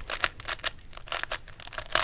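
3x3 Rubik's cube's plastic layers being turned in quick succession, a rapid run of clicks, several a second, as the edge-swapping algorithm is performed.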